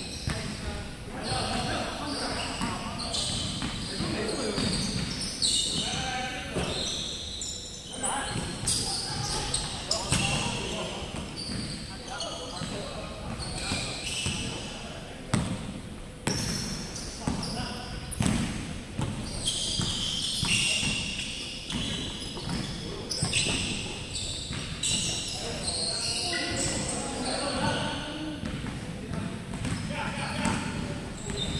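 Basketball game on a hardwood court: the ball bouncing repeatedly, sneakers squeaking in short high chirps, and players calling out, all echoing in a large gym.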